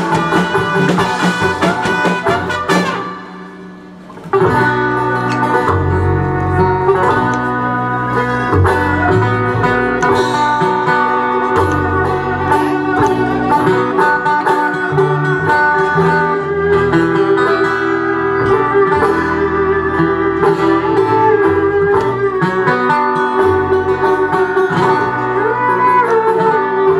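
Live acoustic roots band playing: strummed acoustic guitar over upright bass, banjo and drums. The music drops away briefly about three seconds in, then the full band comes back in.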